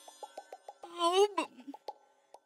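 Television drama background score: a run of quick, evenly spaced plucked or tapped notes. About a second in, a short vocal sound rises and then falls in pitch.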